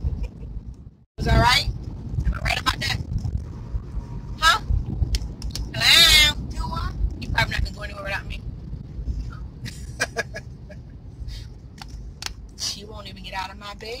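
Short bursts of voices inside a moving car's cabin over a steady low road rumble, with a brief drop-out about a second in.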